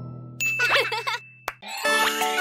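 A short chiming transition sound effect: a bright ding with a held ringing tone and a wobbling jingle. It lasts about a second and stops sharply. Just before the end, new children's music with tinkling chimes begins.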